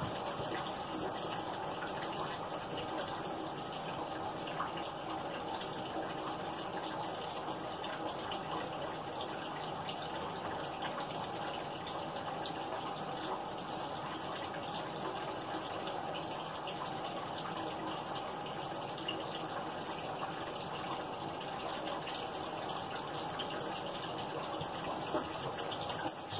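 Steady, unbroken rushing of running water, even in level throughout.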